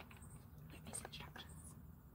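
Faint whispered speech, a few quiet syllables, over a steady low room hum.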